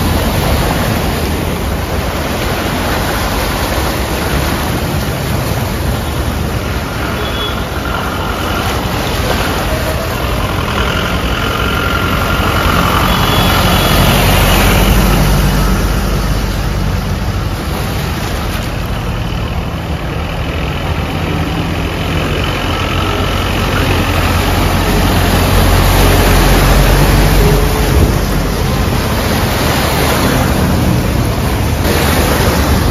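Cars and a truck driving slowly through deep floodwater: engines running low under a steady rush and splash of water pushed aside by the wheels. It grows louder about halfway through and again near the end as vehicles pass close.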